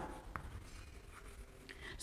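Faint writing sounds, with a couple of brief strokes about a second and a half apart.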